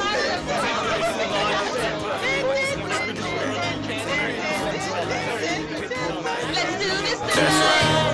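Bar crowd chatter, many voices talking over one another, with background music playing; the music grows louder near the end.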